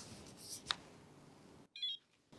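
Faint soft rustling with a single sharp click, then near the end a short, rapidly warbling electronic beep set in a sudden gap of dead silence.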